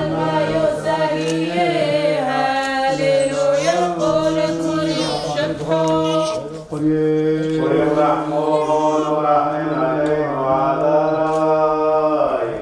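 Liturgical chant sung by a man, held mostly on one reciting note with short melodic turns, with a brief break for breath about six and a half seconds in.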